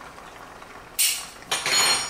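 Two short bursts of kitchen clatter, the first about a second in and the second half a second later, with a thin metallic ring.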